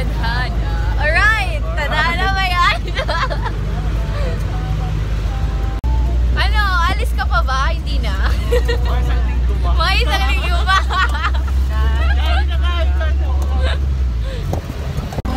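Passenger jeepney's engine and road rumble heard from inside the open-sided cabin while it drives, a steady low drone that grows heavier about six seconds in. Voices rise over it in several spells.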